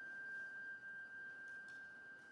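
Quiet passage of a Spanish processional march: a single high note held steady by one instrument of the band.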